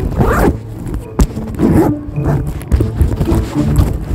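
Zipper of a small fabric sling bag being pulled open and shut several times in short, scratchy strokes.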